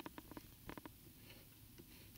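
Near silence with a few faint, scattered taps, typical of a stylus drawing on a tablet screen.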